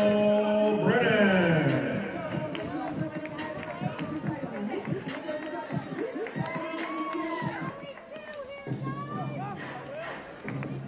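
Ballpark public-address sound over crowd chatter: a loud drawn-out voice holds a note, then slides down in pitch about a second in. After that come quieter voices and faint music over the crowd's murmur.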